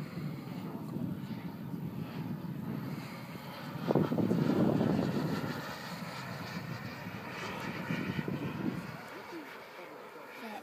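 Radio-controlled model jet flying overhead, its engine a steady rushing roar that swells loudest about four seconds in as it passes, then eases off.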